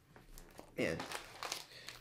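Foil trading-card pack wrapper crinkling faintly in the hands, with scattered light crackles.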